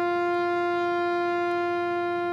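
Ceremonial bugle sounding one long, steady held note.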